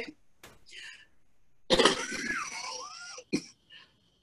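A woman coughing and clearing her throat, in one bout lasting about a second and a half, starting a little before halfway.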